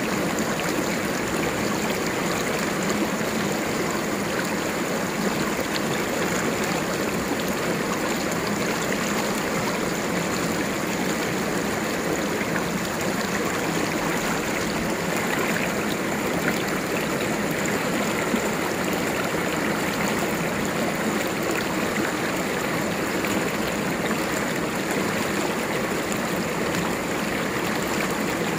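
Shallow river running over rocks, a steady rush of water rippling through a stony riffle.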